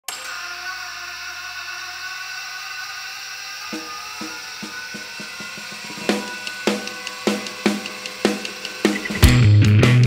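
Noise-rock song intro: a steady droning tone, then quick light ticking joins a few seconds in, then drum hits come about twice a second. Just after nine seconds the full band crashes in loud with heavy bass.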